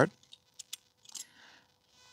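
Thin titanium pot-stand plates clinking as they are pulled apart by hand: three small metallic ticks in the first second, then a faint scrape.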